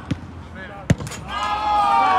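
A single sharp thud of a football being struck about a second in, then several players shouting at once, long loud yells celebrating a goal.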